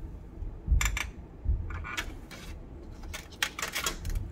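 Butter knife cutting through a soft piece of lithium metal on a stainless steel tray: a handful of short scraping clicks as the blade presses through the metal and meets the tray.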